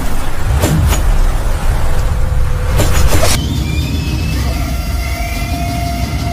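Cinematic intro sound design: a loud, deep rumble with two sharp hits, one about a second in and one about three seconds in, after which sustained tones take over.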